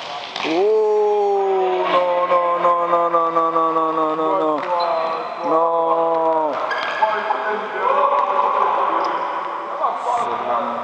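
A man's long drawn-out shout, held for about four seconds and slowly falling in pitch, then a second held shout about a second long and a weaker one near the end: a celebratory yell for an equalising goal.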